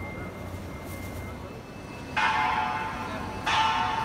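Two loud bell-like chimes, the second about a second and a half after the first. Each strikes suddenly and rings on, fading, over a low steady background.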